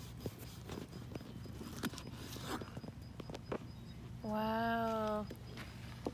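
A husky gives one long whining call of about a second, a little after the middle, the dog wanting the fruit being cut. Around it are faint clicks and scrapes of a kitchen knife cutting through a red custard apple on a plastic cutting board.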